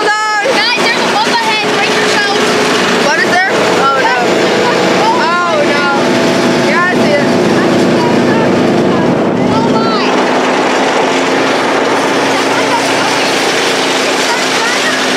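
A tank under way, its engine running at a steady note over a broad noise of travel.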